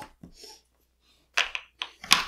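Mostly quiet, with a brief rustle about one and a half seconds in and a small click just after, as little LEGO plastic pieces are handled.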